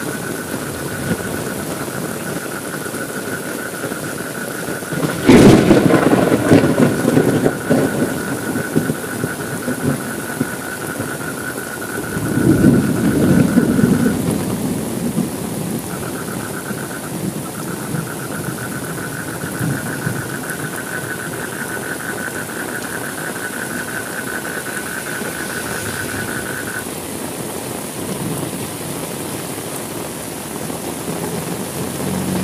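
Steady rain with thunder: a sharp clap about five seconds in that rolls on for several seconds, then a second, softer rumble about twelve seconds in.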